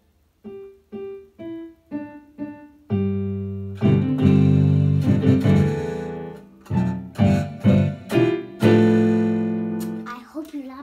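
Piano played slowly: single notes about twice a second, then fuller chords, held and overlapping, from about three seconds in.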